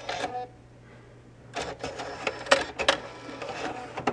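BMW 6-disc CD changer mechanism whirring and clicking just after its magazine is pushed in, typical of the changer reading which discs are loaded. A brief whine comes first, then a run of clicks and whirs in the middle, and a single click at the very end.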